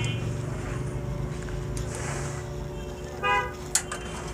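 Steady traffic noise from the street with a low hum, and a short vehicle horn toot about three seconds in, followed by a sharp click.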